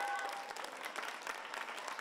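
Spectators clapping, a dense patter of many hands, with a short shout near the start.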